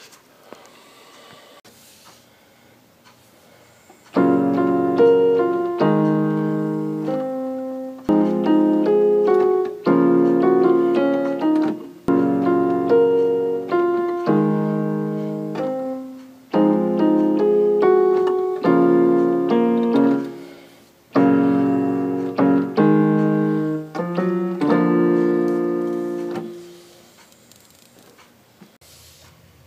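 Electronic keyboard in a piano voice playing a slow progression of held block chords: G-flat, A-flat, F minor, B-flat minor, then G-flat, A-flat, a passing F and F-sharp, and B-flat. The chords start about four seconds in and change every second or two, with a brief pause near the end.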